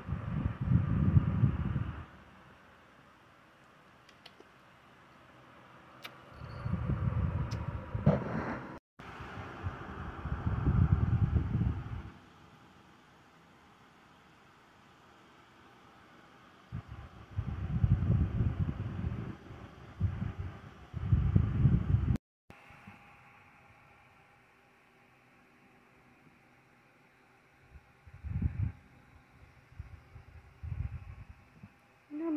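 Domestic cat purring close to the microphone while being held and cuddled: low rumbling in stretches of a few seconds, with quiet pauses between them.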